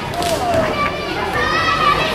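Children's voices shouting and calling out, several high-pitched calls over a background of hall noise, the longest and loudest held through the second half.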